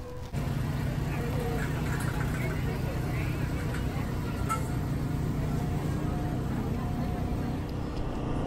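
Outdoor background ambience: a steady low hum with faint distant voices.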